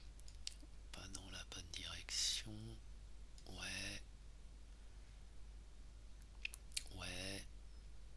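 Quiet muttering and mouth sounds from a man talking under his breath, in three short stretches with a breathy hiss between them, plus a few faint clicks.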